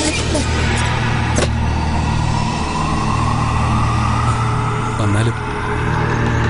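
Dramatic background score: a steady low rumble with a tone that slowly rises in pitch through the second half, and a couple of short knocks.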